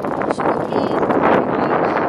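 Strong wind buffeting the camera microphone, a loud, steady rushing noise.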